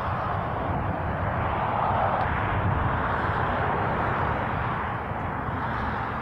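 A vehicle passing. Its engine and tyre noise swell to a peak about two seconds in and then slowly fade, over a steady low rumble.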